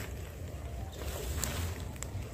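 Wind rumbling on the microphone, a steady low buffeting, with a short patch of rustling hiss about a second in.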